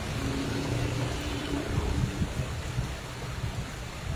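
Car driving slowly through street floodwater, heard from inside the cabin: a steady low engine rumble with the wash of water around the car.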